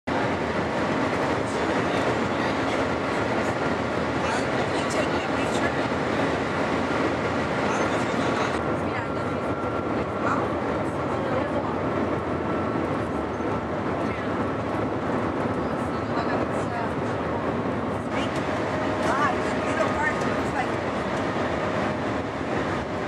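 Steady cabin noise inside a Shanghai Maglev carriage running at high speed, around 380 km/h, with no wheel-on-rail clatter.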